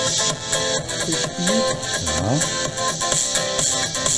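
Music with a steady percussive beat played back through ESU's new small bass-optimised model-locomotive loudspeakers, driven by a LokSound 5 decoder on a test board. It sounds full for such small speakers.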